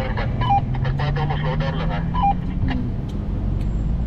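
SUV engine and tyre noise heard from inside the cabin while driving over desert sand, the engine note rising about a second in and easing off again. Two identical short electronic beeps, each stepping down in pitch, sound about two seconds apart.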